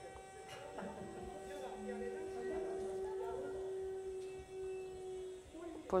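Electric motor and propeller of a senseFly eBee fixed-wing drone running with a steady hum after being shaken to start it, at launch. It is heard as the sound of a video played back in a lecture room.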